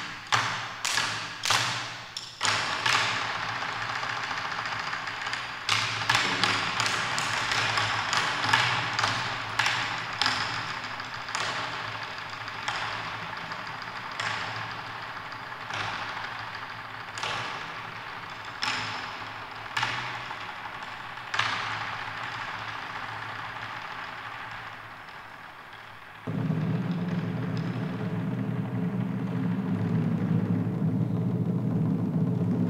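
Chinese drum ensemble playing live: sharp drum strikes ring out in a reverberant hall, quickly at first and then spaced about a second or two apart over a continuous bright wash. About 26 s in, it switches suddenly to a steady, louder low rumble, like a drum roll.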